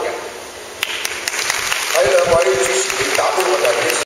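Applause, hands clapping, starting about a second in after a speech ends, with a voice heard over it.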